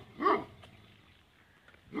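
A dog barking in short single barks: one just after the start and another at the very end, with a quiet pause between them.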